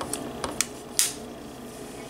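A few light plastic clicks and handling rustle, with one sharper click about a second in: an LG Tone Free earbud snapping into its dock on the neckband.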